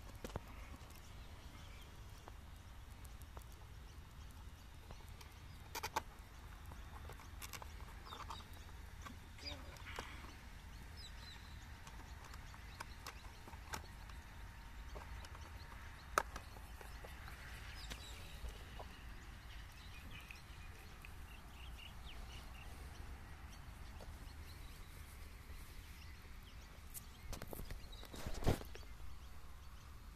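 Scattered light clicks and taps of a plastic RC car body shell being handled and fitted onto the chassis, the loudest cluster near the end, over a low rumble of wind on the microphone.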